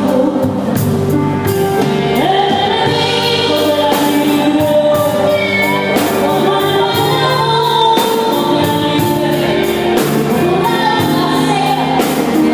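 Live band music with a woman singing a ballad through a microphone, over electric guitars and a drum kit keeping a steady beat, amplified through the club's sound system.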